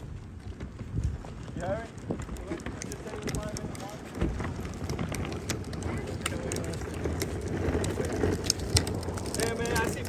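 Small wheels of a pulled folding wagon and a rolling cooler rumbling and clicking steadily along a paved path. Voices of a group talk in the background, and wind hits the microphone.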